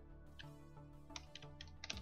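A short run of keystrokes on a computer keyboard, about six unevenly spaced clicks bunched toward the end, typing a word. Soft background music plays underneath.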